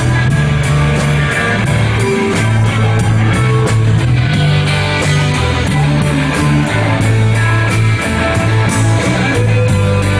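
A live ska band playing a loud cover song, electric bass notes driving under electric guitar and drums with cymbals.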